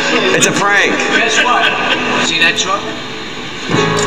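Voices talking and exclaiming over background music with guitar.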